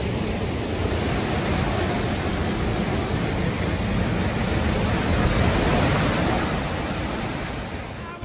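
Derecho windstorm: a steady roar of strong straight-line wind and heavy rain, fading near the end.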